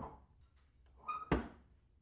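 A single sharp thunk about a second and a half in, just after a brief faint tone, with a short knock at the start.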